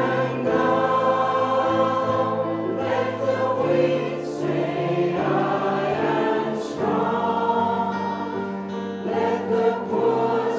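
A worship song sung by a group of voices, with slow, held notes, accompanied by a small church music team on keyboard and acoustic guitar.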